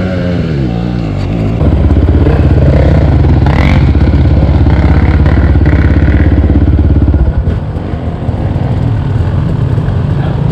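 Dirt bike engine whose revs rise and fall, then run loud and steady for about five seconds before dropping off suddenly, leaving a quieter engine running.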